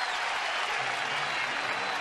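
Ballpark crowd applauding and cheering, a steady wash of noise from the stands.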